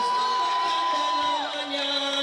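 Unaccompanied voices singing: one holds a long high note that slides down about a second and a half in, while another voice takes up a lower held note, over a cheering, whooping crowd.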